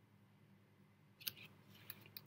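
Near silence with a faint low hum, then a few soft, short clicks in the second half.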